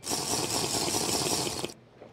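A loud burst of harsh, rattling hiss that cuts in suddenly and stops abruptly after about a second and a half: an edited-in comic sound effect.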